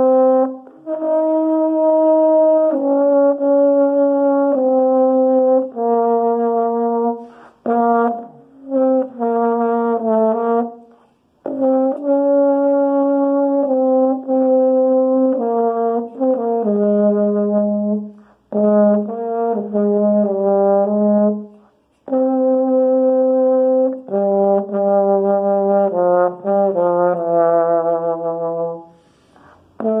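Yamaha YBH-301M marching baritone horn playing a slow melody of long held notes in phrases, with short gaps between phrases. A held note near the end is played with vibrato.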